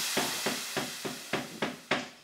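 Fish frying in a pan: a steady sizzle with regular sharp ticks about three to four a second, fading out toward the end.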